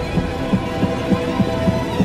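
Suspense music underscore: a low throbbing pulse, about three beats a second like a heartbeat, under a held sustained tone.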